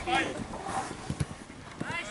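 Football players shouting on an open grass pitch during play, with a couple of short knocks about a second in and again near the end, typical of a ball being kicked.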